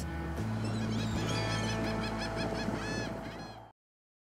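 Gulls calling, a rapid run of short, arched cries over a sustained music bed; everything cuts off abruptly near the end.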